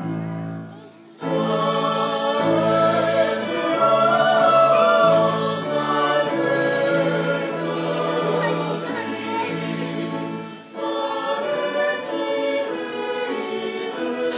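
A church choir singing a Romanian hymn with held notes over instrumental accompaniment, with two brief breaks between phrases, about a second in and near the end.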